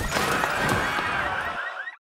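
An animal-call sound effect in a logo sting: one long pitched call that quavers in its second half and fades out just before the picture goes black.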